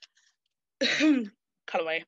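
A person clears their throat once, about a second in, a short rough burst.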